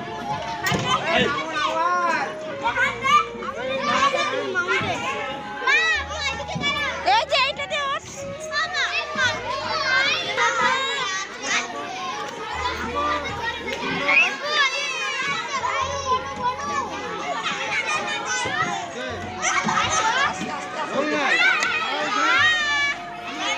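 Many children's voices overlapping: shouting, squealing and chattering while they play on playground slides.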